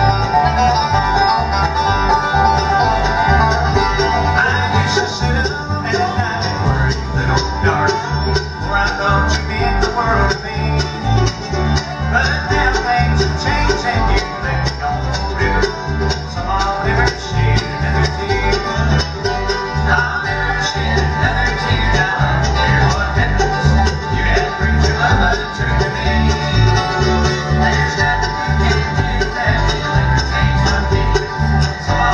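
Live bluegrass band playing: banjo, mandolin and acoustic guitar picking over a plucked upright bass that keeps a steady beat.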